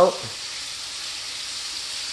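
Steak frying in butter in a pan, a steady sizzle.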